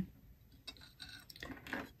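Faint clicks and light knocks of the metal coverstitch hem folder and its hardware being picked up and handled, a few small taps spread through the second half.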